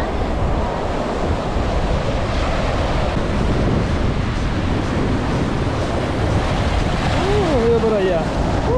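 Ocean surf washing onto a rocky shore, a steady rush of breaking waves and foaming water, with wind on the microphone. A voice is briefly heard near the end.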